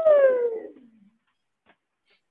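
One long, high vocal call that slides steadily down in pitch over about a second and then fades out.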